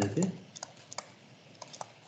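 Light, irregular tapping clicks at a computer, about eight in two seconds, after a short trailing bit of voice at the very start.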